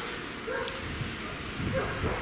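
Faint outdoor background with a short distant dog bark about half a second in.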